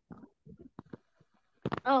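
Mostly quiet, with faint brief low murmurs, then a person speaking near the end.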